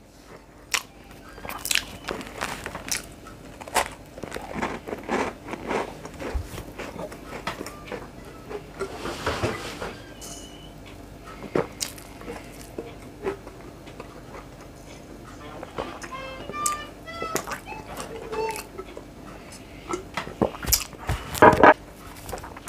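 Close mouth sounds of someone eating a soft cake rusk: biting, chewing and small crunches as scattered clicks, with a drink from a bottle around the middle.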